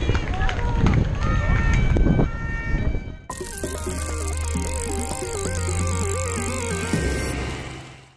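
For about three seconds, the onboard bike camera picks up road and wind rumble with shouting voices. Then it cuts suddenly to a short electronic music jingle with wobbling synth tones over a low drone, which fades out near the end.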